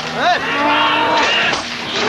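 A person's long, drawn-out shout, sliding quickly up and down in pitch near the start and then held, with a shorter call after it.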